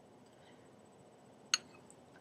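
A single short, sharp clink of a spoon about one and a half seconds in, with a fainter tick just after; otherwise faint room tone.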